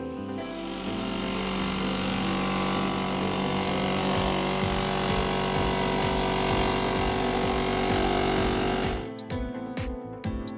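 Ferrex portable piston air compressor running with a rush of air through the vacuum line, drawing the brake fluid out of the master cylinder reservoir; it cuts off suddenly about 9 seconds in.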